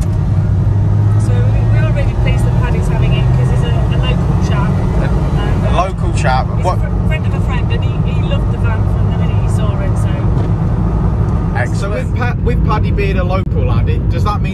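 Suzuki Carry kei truck's small engine pulling along the road, heard from inside the cab as a steady low drone mixed with road noise.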